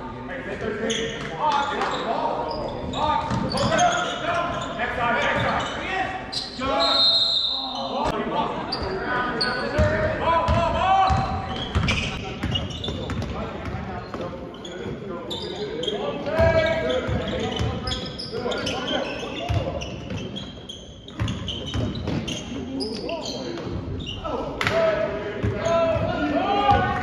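Basketball dribbled on a hardwood gym floor, bouncing repeatedly in the second half, under shouting voices of players and spectators that echo around the hall. A brief high-pitched whistle sounds about seven seconds in.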